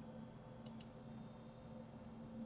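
Two quick clicks of a computer mouse, about two-thirds of a second in, a fraction of a second apart, over a faint steady low hum.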